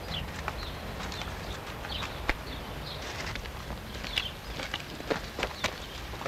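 Irregular light scrapes and clicks of hand plastering: rye straw being pressed and smoothed into soft clay plaster with a trowel and a narrow float. A low steady hum lies underneath.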